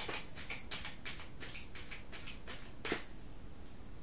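A tarot deck being shuffled by hand: a quick run of short papery flicks, about five a second, with one sharper snap about three seconds in, then the flicking stops.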